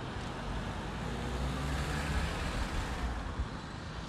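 Cars driving past close by: engine and tyre noise that swells to a peak about two seconds in, then eases as they move off.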